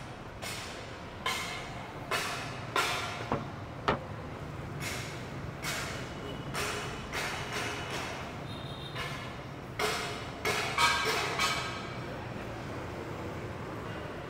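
Night street ambience: a steady low traffic hum with a string of short scrapes and knocks, about one or two a second, busiest near the end, and one sharp click about four seconds in.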